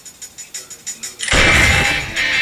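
Animated action-trailer soundtrack played back: a hushed stretch with faint steady ticking, then about a second in, loud music and action effects cut in suddenly.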